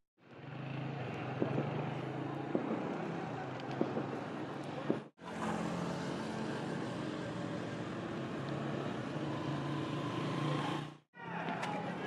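Outdoor street ambience: a steady low hum with a few sharp knocks in the first part, broken twice by abrupt cuts.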